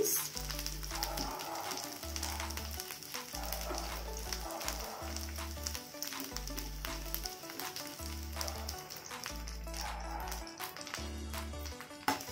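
Chopped cabbage and onion sizzling as they fry in a kadai, under background music with a steady bass beat.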